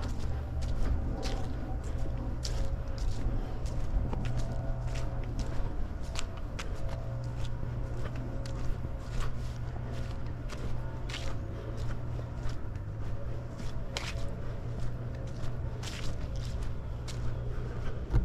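Footsteps of a person walking along a trail, irregular steps over a steady low rumble.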